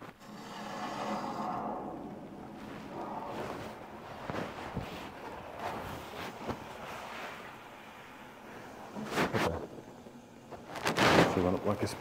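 Water hissing through the supply pipes as the shut-off valve above the water heater is opened again, fading over about two seconds. Handling and footsteps follow, with a short sharp knock near the end.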